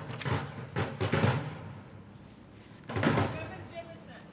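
Bucket drumming: wooden drumsticks striking plastic buckets in loose, irregular hits, busiest in the first second and a half and then thinning out. A voice calls out "Reverend" near the end.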